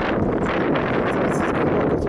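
Steady, loud wind buffeting the microphone, a low rumbling rush without breaks.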